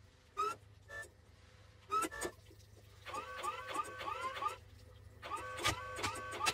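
Cartoon forklift running with a steady low hum, a few sharp clicks in the first two seconds, then from about halfway a fast run of short rising squeaks, about three a second.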